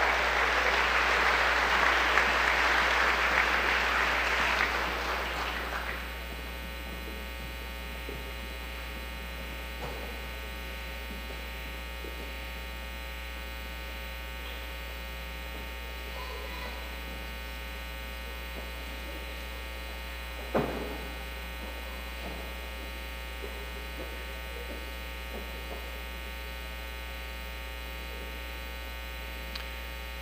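Audience applauding, fading out about six seconds in. After that only a steady electrical mains hum remains, with one short knock about twenty seconds in.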